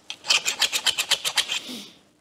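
A quick run of rasping scrapes, about ten a second for over a second, trailing off in a short hiss, from handling a used metal exhaust pipe section.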